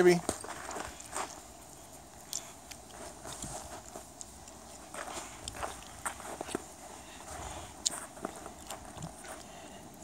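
Footsteps crunching on packed snow: irregular, light steps with small scattered clicks.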